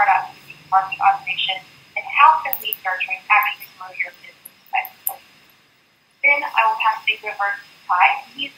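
Speech only: a woman talking into a microphone. Her voice cuts out briefly about six seconds in.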